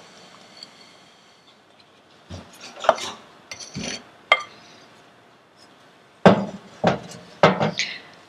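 A faint pour of sugar into a stainless-steel pot of sliced oranges, then scattered knocks of utensils against the pot. Near the end come several loud knocks as a wooden spoon starts stirring the sugar into the fruit.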